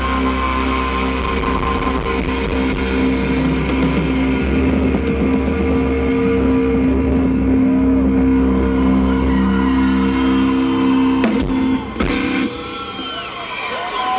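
Live rock band with electric guitars and bass holding one loud sustained chord at the close of a song. The chord breaks off abruptly about twelve seconds in, and the sound drops to a lower level.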